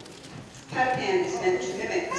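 A woman's voice talking over a microphone and PA, starting about a second in after a brief lull.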